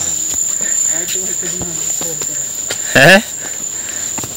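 A steady, high-pitched insect trill, with faint voices in the background and a short spoken word near the end.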